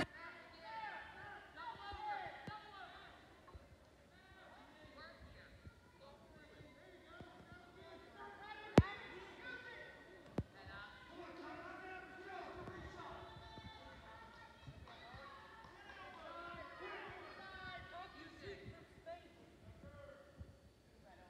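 Coaches and spectators calling out to the wrestlers, their voices distant and echoing in a gym hall. A single sharp thump about nine seconds in is the loudest sound, followed by a smaller knock a second and a half later.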